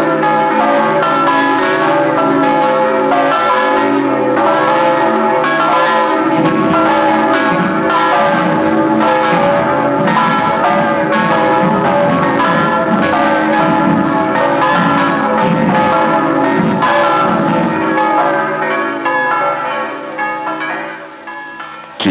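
Church bells pealing, many bells struck in quick, overlapping succession, fading away over the last few seconds.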